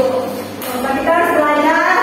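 A woman speaking, with a brief dip about half a second in.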